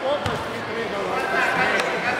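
Two grapplers landing on a foam puzzle mat from a throw: a dull thud about a quarter-second in, with a lighter knock near the end. Voices of people in the hall go on throughout.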